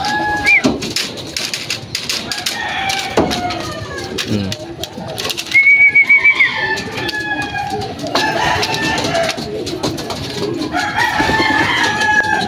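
Racing pigeons cooing in a loft's trap cage, among other birds calling, with a louder high, wavering call about halfway in and scattered clicks.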